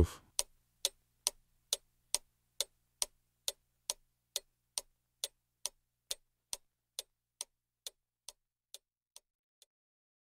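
Steady, even ticking, about two ticks a second, growing gradually fainter until it dies away near the end.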